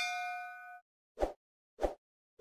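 Notification-bell 'ding' sound effect: a bright chime of several ringing tones that fades away over about a second. Two short, soft pops follow, about half a second apart.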